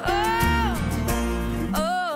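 Pop song playing: a long sung note that rises, holds and slides down, over guitar, bass and drums.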